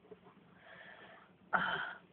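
Near silence, then one short, breathy exhale from a person about one and a half seconds in.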